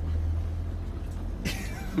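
A Mercedes van's engine and running gear drone steadily inside the cab as it drives across rough, marshy ground, with a brief rustling noise near the end.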